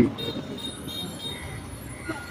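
Street traffic noise at a low, steady level, with faint intermittent high tones.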